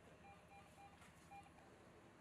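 Patient vital-signs monitor giving four short, faint electronic beeps of one pitch: three in quick succession, then a fourth after a short pause.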